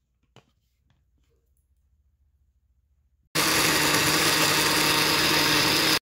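Countertop blender switched on about three seconds in, its motor running loud and steady as it purées rehydrated red chiles with garlic, salt and soaking water into a thick sauce; it cuts off suddenly at the end. Before it starts there is a light click and otherwise near silence.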